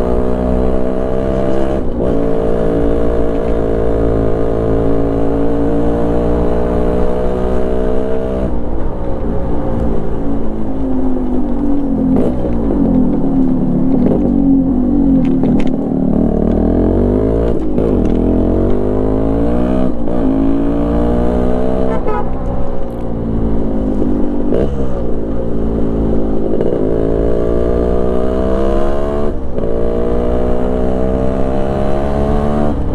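Yamaha RXZ's single-cylinder two-stroke engine under way, its pitch climbing through the gears and dropping suddenly at each upshift. Partway through the revs fall and wander lower as it slows for a bend, then it pulls up through the gears again with several more quick shifts.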